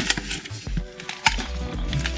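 Cardboard box and plastic parts bag being handled: a few sharp taps and rustles over background music.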